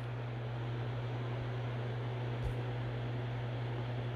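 Steady low hum with an even hiss of background room tone, and one faint soft tap about two and a half seconds in.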